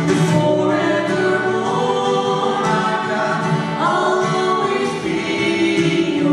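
A woman and a man singing a worship song together, holding long notes, over a strummed acoustic guitar.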